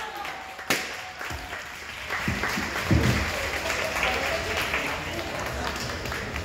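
Audience applauding, the clapping swelling up about two seconds in, with voices mixed in.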